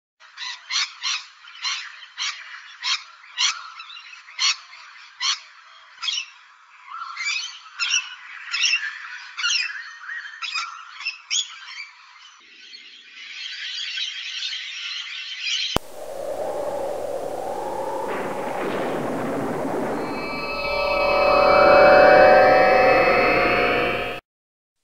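Short animal-like calls repeating irregularly, about twice a second, for the first twelve seconds, then thickening into a denser chatter. A sharp click follows, then a synthesized logo sting whose tones sweep upward and swell louder near the end.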